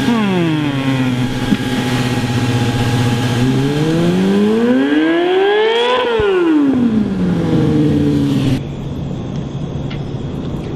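Stunt sport-bike engine settling from revs down to idle, idling steadily, then revved once in a smooth rise and fall back to idle. Near the end the engine sound cuts off abruptly and a quieter, different engine sound takes over.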